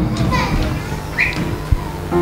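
A congregation praying aloud all at once: a jumble of many overlapping voices, with no single speaker standing out, over low held notes.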